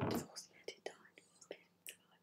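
A woman whispering briefly, followed by a few faint short clicks.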